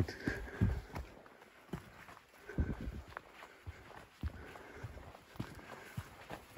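Footsteps on a rocky forest trail: irregular thuds and scuffs of feet on stone and packed earth, roughly one step every half second to second.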